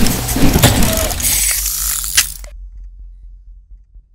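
Logo-intro sound effect of clanking gears and ratcheting machinery, full of sharp clicks. It is loud for about two and a half seconds, then dies away into a low rumble.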